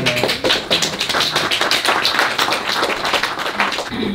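Audience applauding: a dense run of claps.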